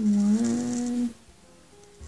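A woman's voice holding one steady, closed-mouth 'mmm' note for about a second, then stopping.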